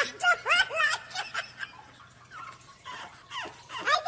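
A person laughing in short bursts, loudest in the first second, quieter in the middle, and picking up again near the end.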